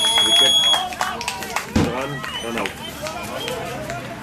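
Several young cricketers' voices calling out and chattering over one another on the field, with a thin steady high tone in the first second and a single sharp knock a little before the middle.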